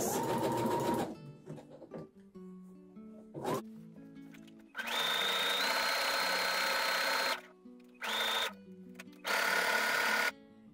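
Domestic sewing machine stitching a dense, wide zigzag over the stretched edge of a knit fabric for a lettuce edge hem, running in stop-start bursts. It runs briefly at the start, then for about two and a half seconds from about five seconds in, then in two short runs near the end, each with a steady whine.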